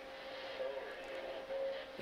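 Faint steady background hum with a thin, constant mid-pitched tone running under it.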